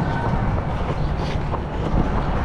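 Steady, loud low rumble of wind and motion buffeting a GoPro Hero 11 carried by a runner in mid-stride on a city street.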